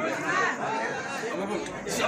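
Indistinct chatter of people talking among themselves.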